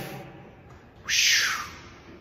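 A man's short, hissy breath about a second in, lasting about half a second.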